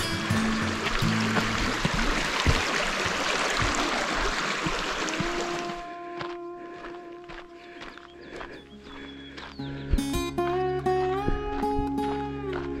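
Rushing creek water over background music of long held notes. About six seconds in, the water sound stops abruptly and only the music remains, its sustained notes shifting in pitch.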